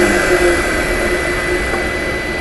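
Steady whirring hiss of powered-up machinery with a thin, steady high whine above it and no distinct knocks or strokes.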